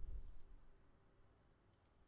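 Near silence between spoken lines, with a few faint clicks.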